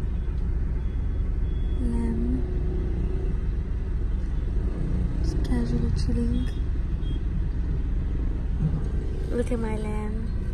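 Steady low rumble of car cabin noise as the car crawls through street traffic, with snatches of voices now and then.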